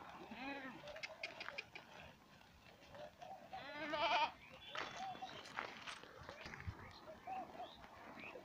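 Goats in a walking herd bleating: several short calls and one longer, louder bleat about four seconds in, over scattered light clicks.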